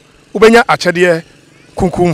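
A man speaking in short phrases, with a brief pause in the middle.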